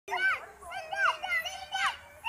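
Young children's high voices calling out and squealing in play, with no clear words.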